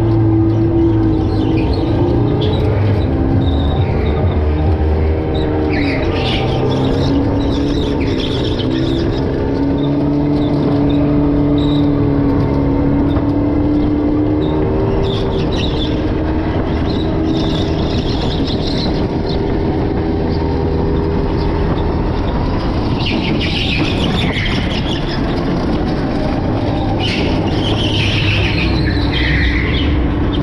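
Electric go-kart running flat out on a track, its motor whine gliding up and down in pitch with speed over a steady rumble, with tyres squealing briefly several times through the corners.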